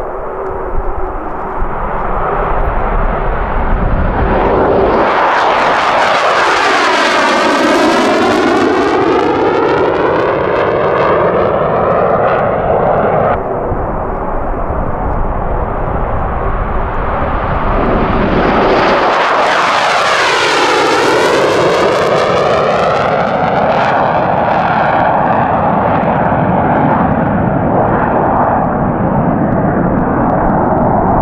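RAF Eurofighter Typhoon FGR4 fighters, each with twin Eurojet EJ200 turbofan engines, taking off at full power. The loud jet noise rises and sweeps past as one jet goes by about six seconds in, and again as a second goes by about twenty seconds in, then holds steady as they climb away.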